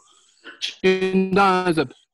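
A man's voice held on a steady, sung pitch for about a second, starting a little under a second in, after a short hiss.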